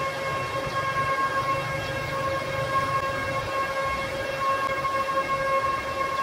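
Steady high-pitched whine with overtones over a low hum, from running electrical equipment at an outdoor telecom equipment cabinet.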